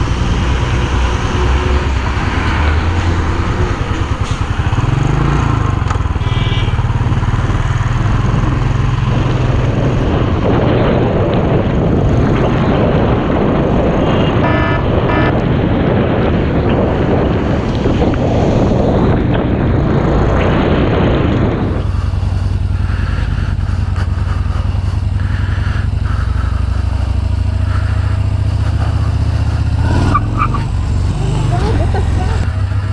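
Motorcycle engine running with wind and wet-road noise on the rider's camera while riding in traffic, with a few short horn beeps. About two-thirds of the way through the sound cuts abruptly to another motorcycle running steadily at low speed, with less wind noise.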